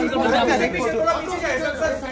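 Several men's voices calling out and talking over one another, a jumble of overlapping shouts.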